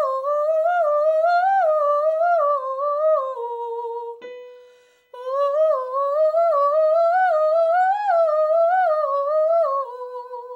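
A woman singing quick agility runs on an "oo" vowel: two long phrases of fast notes stepping up and down, each in one breath. Between them, about four seconds in, a steady keyboard note sounds briefly to give the next starting pitch.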